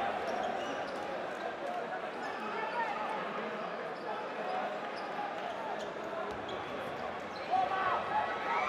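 Basketball dribbling on a hardwood court under the steady chatter of a large indoor arena crowd, with a louder voice rising near the end.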